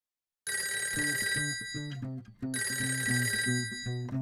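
A cartoon telephone ringing in two bursts of about a second and a half each, starting about half a second in, over the opening of a children's song with repeated low notes underneath.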